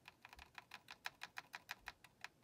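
Apple IIe keyboard: an arrow key pressed over and over, about seven faint clicks a second, stepping the selection through a directory listing.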